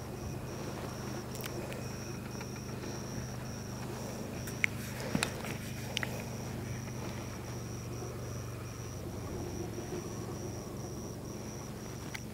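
A UTV spray rig's engine running steadily a long way off across open pasture, heard as a low, even hum. A faint high tone pulses about three times a second throughout, with a few faint clicks near the middle.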